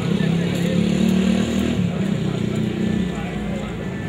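Indistinct chatter of several people talking at once, over a steady low hum.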